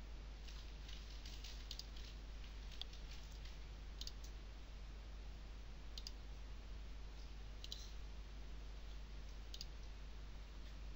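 Computer mouse buttons clicking as points are picked in a CAD program: a quick run of clicks in the first couple of seconds, then single and double clicks every second or two, over a faint low hum.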